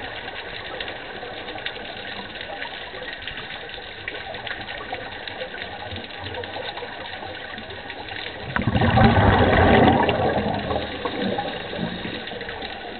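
Underwater sound through a camera housing: a steady crackle of fine clicks, then, from about two-thirds of the way in, a loud rushing gurgle of scuba exhaust bubbles from a diver's regulator lasting about two seconds before it fades.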